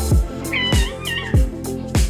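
A cat meowing once, a wavering call lasting under a second that starts about half a second in, over background music with a steady thudding beat.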